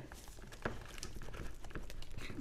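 A spatula stirring a thick powdered-sugar glaze in a glass bowl: soft scraping with small irregular clicks against the glass, one sharper click under a second in.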